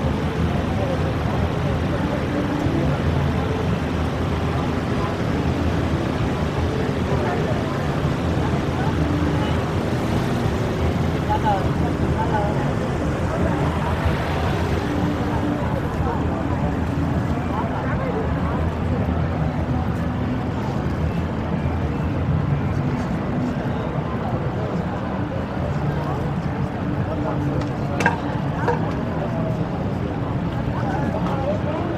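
Busy city street at an intersection: a steady bed of traffic noise from cars passing and waiting, mixed with the voices of pedestrians standing around. A short sharp click near the end.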